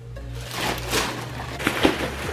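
A plastic garbage bag rustling and crinkling as it is thrown, with a sharp crackle as it lands near the end, over background music with a steady bass.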